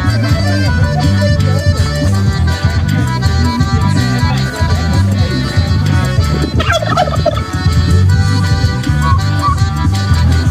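A tom turkey in full strut gobbling once, a short rough burst about two-thirds of the way through, over continuous music with a steady bass pattern.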